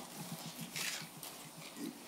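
Pause between speakers: low room tone with a few faint small noises, then a soft voice sound near the end.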